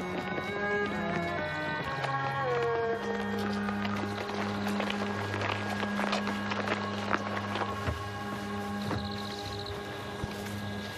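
Film score music with long held notes and a deeper sustained note coming in about three seconds in, over the footsteps of several people walking on a stone path.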